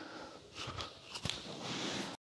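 A person rolling across a wooden floor: body, hands and clothing brushing and knocking on the boards. There are a couple of light knocks about a second in, and the rustling grows louder near the end as he goes over his shoulder.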